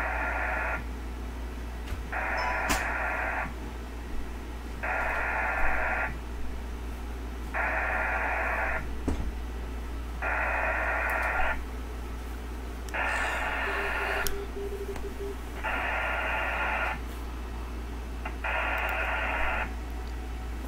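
VARA HF digital modem sending repeated connect requests to a Winlink gateway that has not yet answered. It makes hissing data bursts about a second and a half long, repeating roughly every 2.7 seconds, eight times, over a steady low hum.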